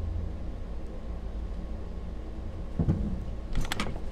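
A few quick small clicks of a little metal charm loop and chain being handled and pried at, near the end, after a short low thump about three seconds in, over a steady low hum.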